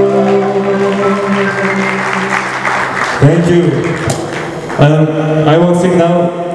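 Live band with singers and keyboard performing a Bollywood Hindi song. Held notes ring over the first three seconds, then from about three seconds in a man's voice sings short held phrases.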